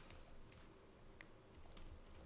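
Near silence with a few faint computer keyboard key clicks as a track name is typed.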